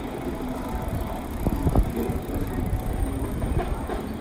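Street noise: a steady low rumble, with a cluster of knocks about one and a half seconds in.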